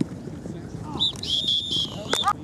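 Referee's whistle blown on a flag football field: a short high chirp about a second in, then a steady shrill blast of about half a second near the end.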